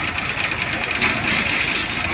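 Bus engine running with a steady low rumble and road noise, heard from inside the moving bus.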